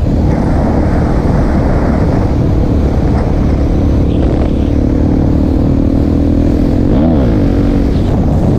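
Suzuki DR-Z400 supermoto's single-cylinder four-stroke engine running under way at cruising speed, heard from the rider's helmet over heavy wind rush. The engine pitch climbs slowly, then rises and falls briefly near the end.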